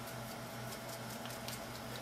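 Faint, rapid soft patter of hands shaking a forearm back and forth in a massage shimmy, with skin and sheet rustling, over a low steady hum.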